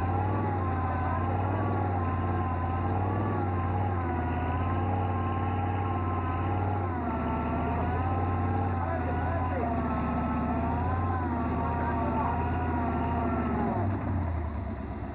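Jeep engine running hard at high revs while stuck in deep mud, its pitch wavering up and down continuously as the tires churn for grip.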